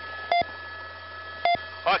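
Two short electronic beeps about a second apart on a police radio channel, typical of the push-to-talk tones between transmissions, over a steady low hum.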